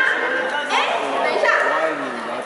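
A woman's lively speech through a stage microphone in a large hall, with a sharp rising exclamation a little under a second in.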